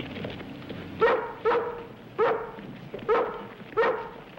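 A rough collie barking five times in short, sharp barks over about three seconds.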